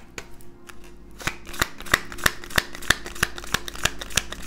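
Tarot cards being shuffled by hand: a quick run of crisp card clicks and snaps, several a second, starting about a second in.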